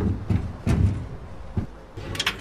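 A run of sharp clicks and low thuds, about five in two seconds, from someone getting into a coin-operated photo booth and working its coin slot.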